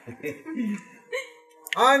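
Drama dialogue: short spoken fragments and a brief vocal sound in the first half, then a voice breaks into continuous speech just before the end.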